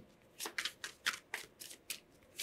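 A tarot deck being shuffled by hand, cards slid from one hand to the other: a quick series of short papery swishes, about four a second.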